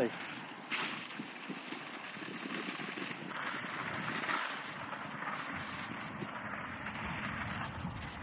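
Steady rushing hiss of a firefighters' hose jet spraying water onto a burning tractor and baler, with a single sharp click about a second in.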